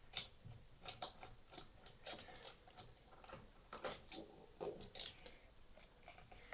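Faint, irregular metal clicks and ticks as the threaded screw of an ABT tap splitter is wound back by hand on a basin tap.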